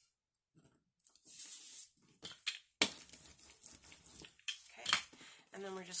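Paper and cardstock being handled on a tabletop: rustling and scraping that starts about a second in, with scattered clicks and one sharp click a little under three seconds in.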